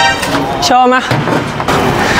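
Skateboard wheels rolling over concrete, a steady rumble through the second half, with a short bit of speech about a second in.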